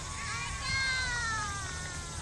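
A high-pitched, drawn-out call, like a voice, that falls slowly in pitch over about a second and a half. Fainter distant voices and a low rumble sit underneath.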